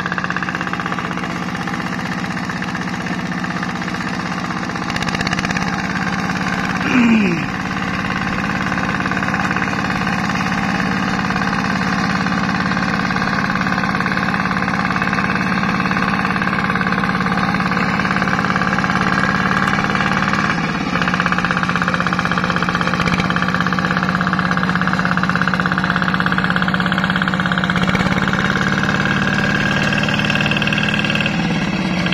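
Two-wheel hand tractor's single-cylinder diesel engine running steadily while plowing a flooded rice paddy. About seven seconds in, a short sound slides down in pitch.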